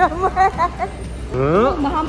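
People talking close to the microphone, with a short pitched sound about one and a half seconds in that rises and then falls.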